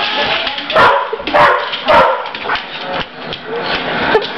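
Australian Shepherd barking during play: three loud barks about half a second apart, starting about a second in.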